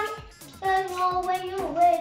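A high voice singing long held notes, shifting to a new note partway through, over music with a quick, steady beat.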